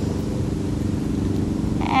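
A steady, low motor hum with a fine, even pulsing rumble underneath, like an engine running at constant speed.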